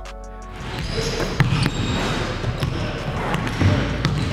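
Basketballs bouncing on a hardwood gym floor in a large hall during practice, starting about half a second in, with repeated low thumps and a few sharp knocks over a busy background.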